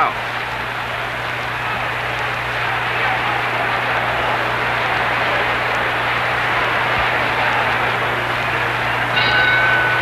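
Boxing arena crowd noise: a steady din of many voices from the spectators, over a constant low hum from the old recording. A brief high tone sounds near the end.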